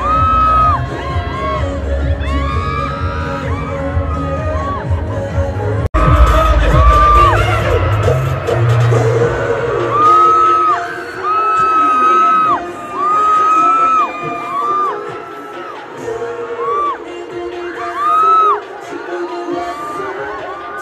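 Live pop music at a concert with heavy bass, and the crowd cheering and screaming. The sound cuts out abruptly about six seconds in, then carries on with different music.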